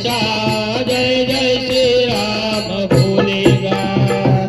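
Marathi devotional Sai Baba bhajan performed live: a lead singer on a microphone with the group joining in, over hand clapping and rhythmic percussion, the percussion strokes coming thicker near the end.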